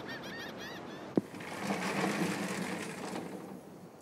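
Night-time ambience: a quick series of high, wavering chirps in the first second, a sharp click about a second in, then a low steady hum that fades toward the end.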